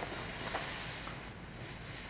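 Clothing rustling as a jacket is pulled and straightened at the collar, with a couple of small clicks in the first second before it settles.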